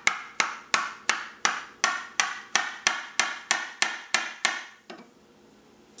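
Ramming rod knocked repeatedly down inside a PVC rocket motor casing, driving a tight-fitting propellant grain segment toward the bottom: an even run of sharp knocks, about three a second, each with a short ring, ending a little before the last second.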